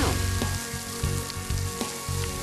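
Beef slices sizzling in hot oil on an electric skillet set to high, browning in an even frying hiss.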